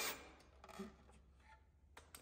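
A Milwaukee cordless drill-driver finishing driving a screw through the outlet box's mounting tab into a wooden stud, its running cutting off a moment in. Then near quiet with faint handling sounds and a short sharp click near the end.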